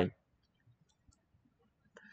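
Near silence after a spoken word ends, broken by a faint tick about a second in and a short click near the end.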